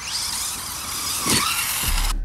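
Brushless electric motor of a 1:10 Reely Dune Fighter RC buggy whining at full throttle on a LiPo pack, its pitch climbing, then dipping and rising sharply about a second and a half in, with tyre rush over grass. Music comes in near the end.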